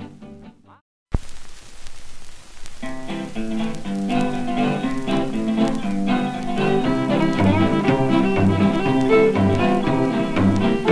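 A 1930s Melotone 78 rpm string-band record: one side fades out, followed by a moment of silence and a click. A stretch of surface hiss follows, then about three seconds in the instrumental opening of the other side starts, fiddle over guitars and bass.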